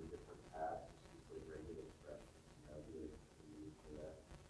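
A student's voice asking a question from the audience, faint and distant, picked up off the lecturer's microphone in a lecture hall.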